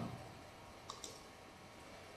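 Near silence: faint room tone, with two small, sharp clicks close together about a second in.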